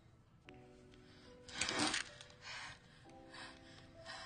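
Film score holding soft, sustained notes, with a loud, harsh, rasping burst about one and a half seconds in and fainter breathy bursts after it.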